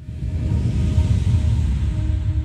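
Closing logo sting: a loud, deep rumbling swell with a hiss across the top and a couple of faint held tones, setting in suddenly out of silence.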